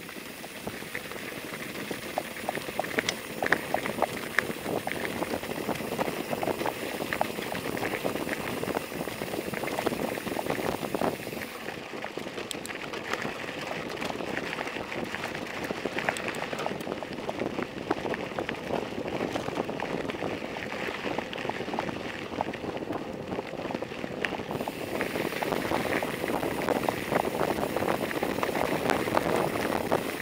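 Bicycle tyres rolling over a gravel road: a steady crackling crunch with many small clicks and rattles. The sound turns duller for a stretch in the middle.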